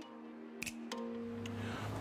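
Background music: held notes that change about a second in, with a few light ticks.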